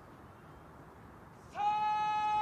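Bugle sounding one long, steady held note that begins about one and a half seconds in, after a quiet stretch.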